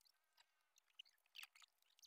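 Near silence: faint outdoor ambience with scattered faint high-pitched chirps and ticks.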